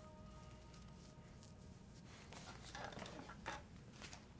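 Near silence in a small room: a faint musical tone fading out in the first half, then a few soft rustles and light footsteps of a person moving about, from cloth and shoes, in the second half.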